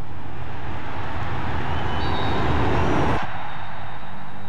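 Stadium crowd at a Gaelic football match, a broad roar that swells and then cuts off suddenly a little after three seconds in.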